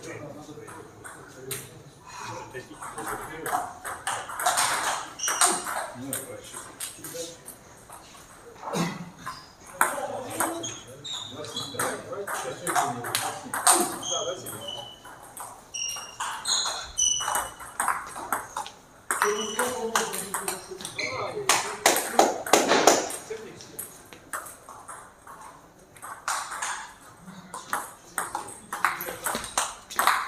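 Table tennis ball clicking off bats and the table in rallies: runs of sharp ticks with pauses between points.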